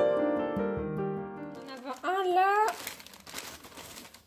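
Soft piano music fading out over the first two seconds, then a short vocal sound, followed by the crinkling and rustling of packing paper and a plastic bag being handled in a cardboard box.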